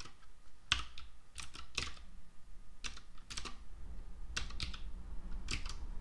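Computer keyboard being typed on: short clusters of a few keystroke clicks with pauses between them, over a faint steady low hum.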